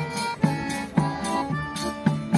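Button accordion playing a lively folk dance tune, its bass sounding on every beat at about two beats a second under the melody, with a tambourine jingling along on the beats.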